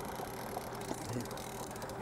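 Fast clicking of a fishing reel's ratchet, mostly through the middle of the moment, while a hooked coho salmon is played at the boat's side, over the steady hum of the boat's engine.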